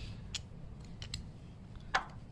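Small metal clicks and taps as a timing belt tensioner roller is handled and set onto its mount on the engine; several faint clicks, then one sharper click near the end.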